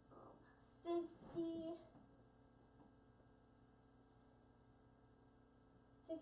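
A person's voice making two short hummed sounds about a second in, the second a little longer. After that, quiet room tone with a faint steady hum.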